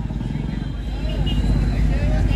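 Background noise of a gathering: a steady low rumble with faint murmuring voices.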